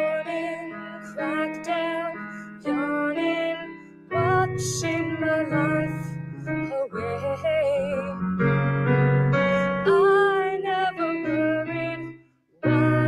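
Yamaha digital piano played live through an amplifier: sustained chords over a bass line, with a melody moving above them in phrases.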